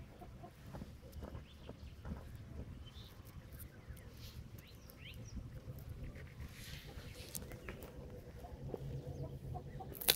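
Quiet outdoor background with faint, scattered bird calls and light scrapes and ticks of a stick in loose soil, over a low steady rumble.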